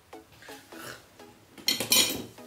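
A ceramic plate clinks sharply, with a brief ringing, as it is set down onto the table near the end. Faint background music underneath.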